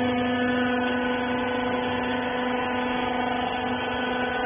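Steady machine hum with a constant low tone and its overtones, from the rag baler's electric motor running.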